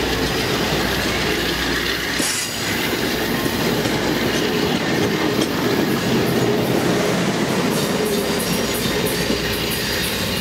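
Amtrak passenger coaches rolling past at close range: a loud, steady rumble of steel wheels on rail, with faint clicks as the wheels cross rail joints.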